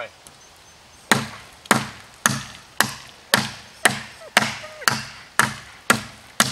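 Gransfors Bruks Outdoor Axe chopping into the base of a standing wrist-thick maple sapling, always striking in the same direction: about ten sharp strikes, roughly two a second, starting about a second in.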